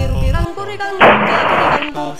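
A single very loud Smith & Wesson .500 S&W Magnum revolver shot about a second in, heard as a harsh burst of noise that lasts nearly a second and cuts off abruptly. A song with singing plays before it.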